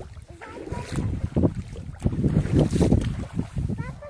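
Wind buffeting the microphone over water splashing in a shallow river, with louder surges about a second and a half in and again between two and three seconds.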